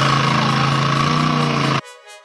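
A rock bouncer race buggy's engine running steadily, its pitch rising slightly about a second in. It cuts off abruptly near the end as electronic music begins.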